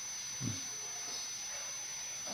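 Pause in the talking: a steady faint hiss of background recording noise with a thin high whine, and one brief faint sound about half a second in.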